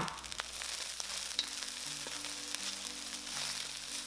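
Rice, vegetables and diced char siu sizzling steadily in a hot wok as they are stir-fried, with a few light clicks of the wooden spatula against the pan.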